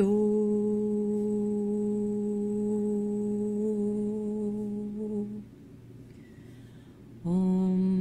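A woman's voice toning a long, steady wordless note in a meditation chant, held for about five seconds, then a short pause for breath before a slightly lower note begins near the end.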